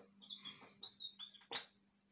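Whiteboard marker squeaking and scratching against the board in a series of short strokes while words are written, with one sharper stroke about one and a half seconds in.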